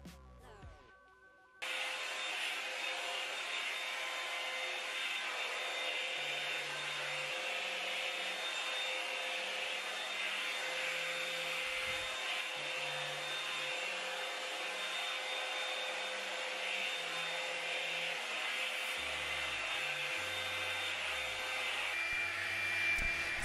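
Revlon One-Step hot-air dryer brush running steadily with a loud airy hiss and a faint hum. It cuts in abruptly about a second and a half in, over quiet background music.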